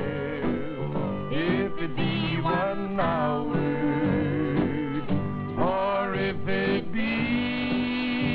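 A man and a woman singing a country duet in harmony, with acoustic guitar accompaniment. They hold long notes with vibrato. The sound is thin and band-limited, like old kinescope television audio.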